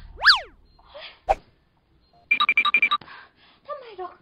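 Cartoon comedy sound effects. A quick whistling glide sweeps up and down, followed by a sharp click and then a rapid run of about eight ringing beeps.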